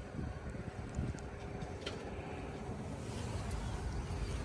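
Low outdoor background rumble, with a few faint ticks, one a little before the halfway point.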